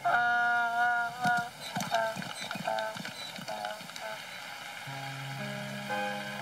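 Donkey braying: one loud call held steady for about a second, then shorter broken calls, over gentle background music.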